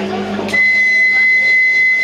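A loud, steady, high-pitched signal tone starts suddenly with a click about half a second in and holds without change: the steamer boat's departure signal.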